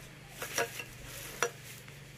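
A few light clicks and scrapes from a large knife worked by hand against food and a drinking glass, the sharpest click about one and a half seconds in, over a faint steady low hum.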